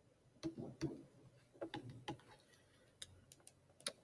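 Faint, scattered clicks and taps of a stylus on a pen tablet as handwriting is put down and pen tools are picked, with a few sharp clicks near the end. A quietly spoken "zero" comes about a second in.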